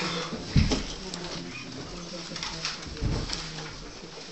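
Low murmur of voices in a small meeting room, with two dull thumps, about half a second in and about three seconds in.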